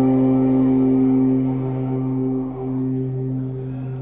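Live band's amplified instruments holding one sustained chord that slowly rings out and fades.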